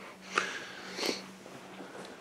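A man getting up from a sofa and moving off: two short rustling knocks, about half a second and a second in, over a faint steady hum.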